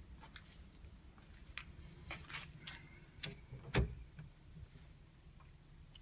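Faint handling noise from a handheld phone: scattered light clicks and rubbing over a low hum, with a few brief knocks, the loudest just before four seconds in.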